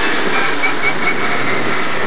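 Citroën Saxo rally car's engine and drivetrain heard loud from inside the cabin, running in sixth gear. A high whine falls slowly in pitch as the car slows after the stage finish.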